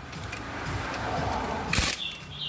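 Pneumatic impact wrench running on a car wheel's lug nuts, getting louder over about a second and a half, with a sharp clack near the end.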